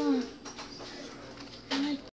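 A pigeon cooing: a short low coo falling in pitch at the start, and another brief coo near the end.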